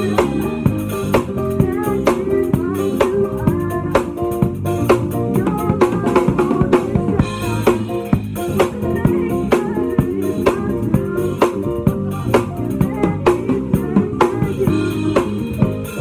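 A band playing live, led by an acoustic drum kit keeping a steady groove of kick, snare and cymbal hits close to the microphone, with pitched instruments sounding underneath.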